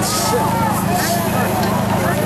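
Chatter of a crowd of voices at an outdoor market over a steady low engine hum.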